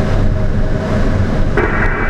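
Steady rush of air over the ASK 21 glider's cockpit in unpowered flight, with a voice starting near the end.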